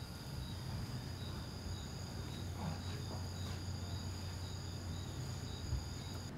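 Crickets chirping at night: several steady high-pitched trills, one of them pulsing in short regular chirps, over a low steady hum.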